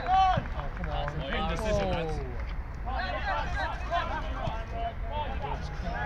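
Footballers shouting and calling to one another during play, several voices overlapping, with some long drawn-out calls, over a steady low background rumble.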